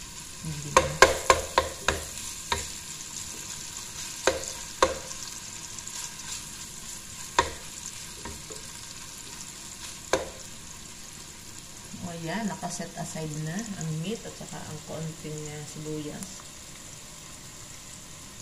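Beef cubes frying with a steady sizzle in a nonstick pot while a wooden spoon stirs them. The spoon knocks against the pot several times in quick succession in the first couple of seconds, then a few single knocks up to about ten seconds in.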